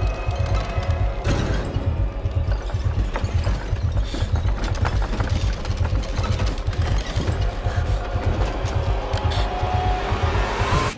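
Horror-trailer sound design: a loud, rapidly pulsing low rumble with rattling noise, swelling every few seconds and building to a rising tone near the end.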